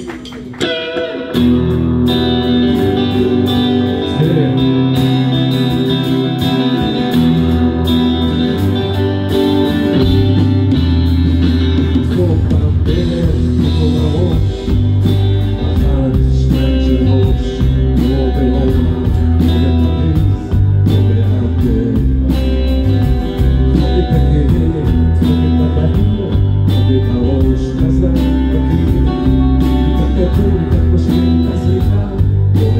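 Live rock band playing: electric guitar and acoustic guitar over drums, kicking in loud about a second in, with a heavier low end from about ten seconds in.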